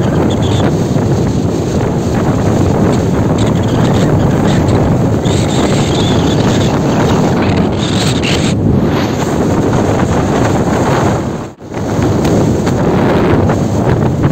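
Wind rushing hard over the microphone from a moving pickup truck, with the truck's road and engine noise beneath. The noise drops out for a moment about three quarters of the way through.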